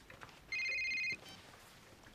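Mobile phone ringtone: one electronic ring of a few high trilling tones, lasting just over half a second, starting about half a second in and followed by a short blip of notes. The phone is ringing before the call is answered.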